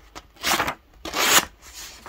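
The small knife blade of a Cattleman's Cutlery Ranch Hand multitool slicing through a sheet of paper in a sharpness test, two short cutting strokes under a second apart. The blade cuts passably, "not bad".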